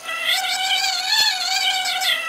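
A woman's long, high-pitched squeal, wavering slightly and fading near the end, as a condiment bottle is squeezed over her head.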